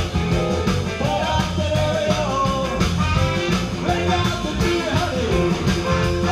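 A live rock band plays with a drum kit, electric bass and keyboards, keeping a steady beat under a melody line.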